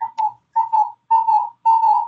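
Conference-call audio echo: speech fed back and forth through the call comes back as a run of short, whistly, ringing chirps, roughly in pairs every half second. This is the background echo that a participant complains of.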